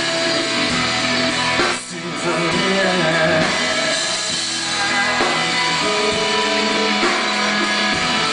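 Rock band playing live: electric guitar, bass guitar and drum kit with cymbals, with a brief dip in the sound about two seconds in.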